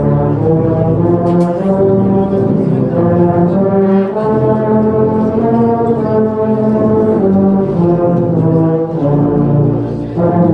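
A large ensemble of tubas, sousaphones and euphoniums playing a Christmas carol in full, sustained chords, the harmony shifting every second or two.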